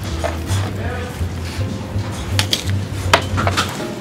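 Jazzy instrumental background music with a steady bass line. A few light clicks sound around two and a half and three seconds in as raw chicken is pressed flat and handled on a plastic cutting board.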